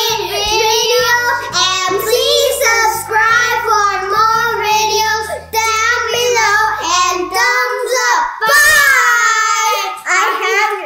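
A child singing a short song over backing music. The backing drops out about seven and a half seconds in, and the singing goes on alone and ends on a long held note.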